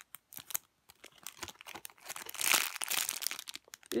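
Thin clear plastic bag around a foam squishy toy crinkling as it is handled and pressed: scattered crackles at first, then a louder, denser burst of crinkling a little past the middle.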